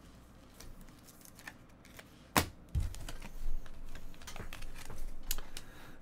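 Trading cards being picked up and handled on a rubber mat: a sharp click a little over two seconds in, then a run of light, irregular taps and rustles.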